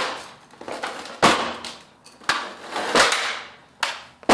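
A boot stomping on the plastic base of an upturned upright vacuum cleaner: a series of sharp cracking thuds, the loudest about a second in and about three seconds in, as the plastic floor deck is forced to break away from the body.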